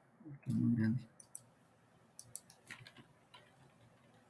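Several faint, scattered computer mouse clicks, with a short low hum from a voice about half a second in.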